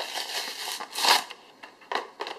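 Plastic blister packaging being handled and opened, crinkling and rustling, with a louder crackle about a second in.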